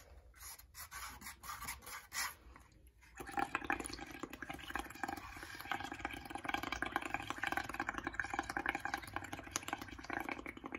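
Blowing through a straw into a bowl of soapy paint and water, with a steady rapid bubbling gurgle. The bubbling starts about three seconds in, after a quieter pause with a few small clicks.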